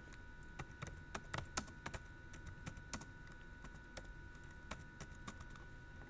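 Computer keyboard typing: an irregular run of faint key clicks.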